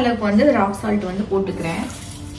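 Only speech: a woman talking.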